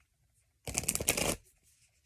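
A deck of tarot cards being riffled: one quick run of rapid card flicks lasting under a second, starting about half a second in.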